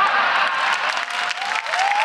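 Audience clapping and laughing in response to a stand-up comedy punchline.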